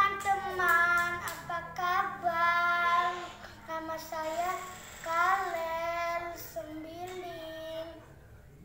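A six-year-old boy singing solo with no accompaniment, in held notes that slide up and down.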